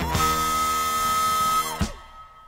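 Jazz-rock band with horns and drums holding a loud sustained chord topped by one high held note, struck sharply at the start and cut off abruptly near the end.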